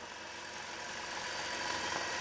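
Gammill Statler Stitcher computer-guided longarm quilting machine running as it stitches a pattern: a steady mechanical hum with a fine, rapid stitching texture, growing gradually louder.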